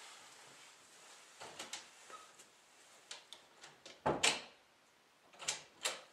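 A door being handled: a few light clicks and knocks, then two louder knocks about four and five and a half seconds in as the door and its latch are worked.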